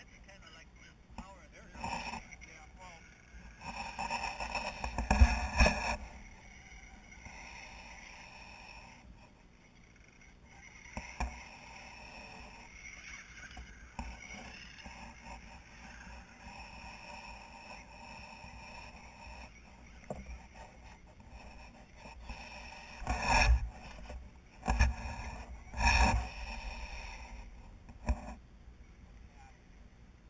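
Radio-controlled rock crawlers driving over rocks: a faint electric motor and gear whine with tyres scraping and grinding on rock. There are louder, rougher bursts a few seconds in and again near the end.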